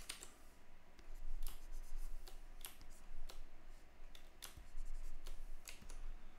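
About ten irregular clicks of computer keyboard keys being pressed for shortcuts while working in sculpting software.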